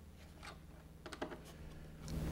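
Faint light clicks of a small screwdriver tightening short screws into plastic receivers on a foam model airplane, a few about half a second in and a cluster around a second in, over a low steady hum.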